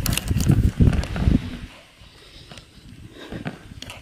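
Footsteps on loose sand, with low thuds and rustles during the first second and a half.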